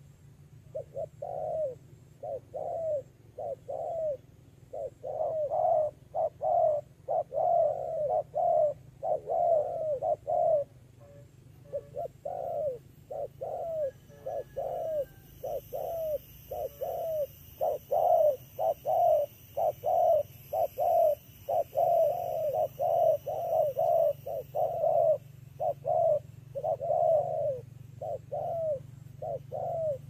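Spotted doves cooing over and over, short rounded coos in quick runs with brief gaps between runs.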